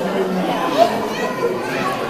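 Indistinct, overlapping chatter of several people, children's voices among them, with no clear words.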